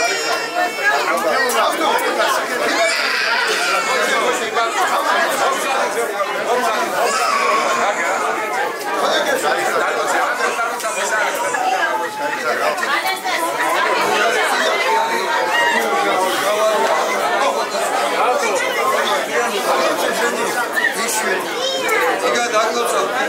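Crowd of guests chatting, many voices talking over one another at a steady level.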